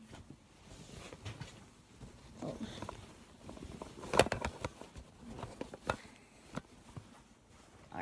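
A baby bottle of formula being shaken and handled: irregular knocks and rustles, loudest about four seconds in.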